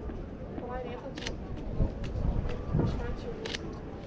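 Camera shutter firing twice, about a second in and again near the end, over faint background voices and outdoor noise.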